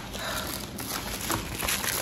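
Plastic shipping mailer crinkling as it is handled and pulled open by hand, with irregular small crackles.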